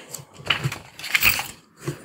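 Protective plastic film being peeled off the back of a new phone, crinkling and crackling in several short, irregular bursts.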